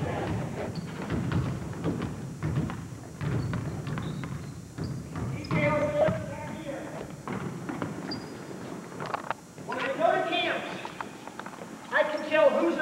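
Several basketballs bouncing on a hardwood gym floor: many irregular, overlapping dribbles echoing in the hall, with people talking at times.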